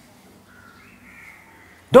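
A pause in a man's speech: quiet room tone with a faint, thin high tone lasting about a second, then his voice comes back in sharply at the very end.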